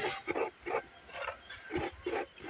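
Rhythmic scraping by hand over a small basin, about three short strokes a second.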